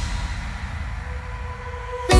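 DJ transition effect in a remix mix: a low, rumbling wash of noise with a faint steady tone, after the music drops out at the start.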